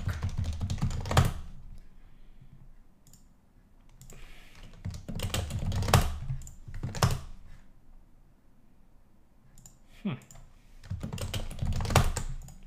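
Typing on a computer keyboard in three bursts of rapid keystrokes: one at the start, one about five seconds in, and one near the end, with quiet gaps between.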